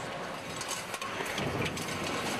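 Metal stamping presses running on a factory floor, with an irregular clatter of clicks and clanks over a steady machine noise.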